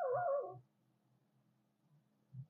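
Whiteboard marker squeaking against the board: one short, wavering squeal about half a second long at the start, with a couple of soft low knocks under it.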